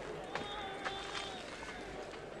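A voice holds one long, slightly wavering cry for about a second, over a few light knocks and shuffling steps.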